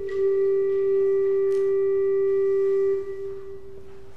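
A single soft, pure-toned organ note held steady for about three seconds, then released, lingering briefly in the church's reverberation.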